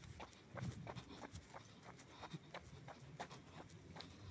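Quick footsteps on a concrete path: a fast, fairly faint run of light clicks and low thuds, about four or five a second.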